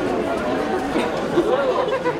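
Crowd of people talking at once: steady, overlapping chatter with no single voice standing out.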